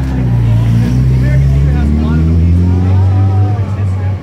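Deep, steady engine rumble of a motor vehicle in the street, loud and continuous, with a crowd's voices calling and chattering over it.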